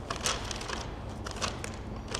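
Irregular crinkling and crackling of a small white item, paper or plastic, being handled and worked between the fingers, in a few short bursts.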